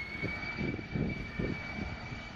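Jet engines of the Global SuperTanker, a Boeing 747 converted to a fire bomber, flying low past: a steady high whine over an uneven rumble.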